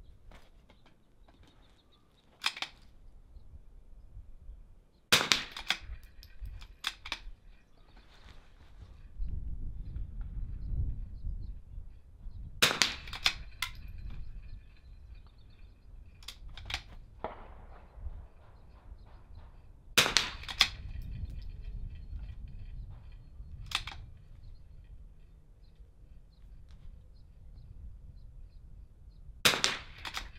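.22 LR rimfire rifle shots fired prone at steel targets: about four loud, sharp reports spaced several seconds apart, with quieter clicks between them.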